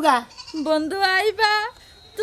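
A woman speaking in a wavering, tearful whine, in a few short phrases that stop a little before the end.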